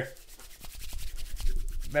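A hand rubbing and scratching at a stubbled chin close to the microphone: a dense, irregular scratchy rasp that grows a little louder near the end.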